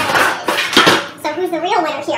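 Wooden stir stick scraping and knocking against the inside of a metal paint can as the paint is stirred. A person's voice comes in about a second in.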